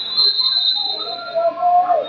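A whistle blown in one long blast lasting about a second and a half, steady and high, with voices shouting over it in the gym.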